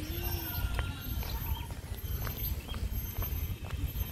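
Footsteps on a brick path, about two steps a second, over a steady low rumble of wind on the microphone.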